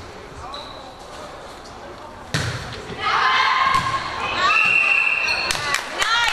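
Indoor volleyball struck hard with the hand in a serve: a single sharp smack about two and a half seconds in, echoing in the gym. It is followed by a burst of loud shouting voices as the rally starts.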